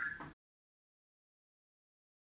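Silence: the last of a man's spoken word is cut off about a third of a second in, and dead digital silence follows.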